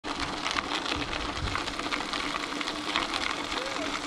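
Mountain bike rolling along a gravel trail: steady crunch and rattle of tyres on loose gravel, with a faint steady hum underneath.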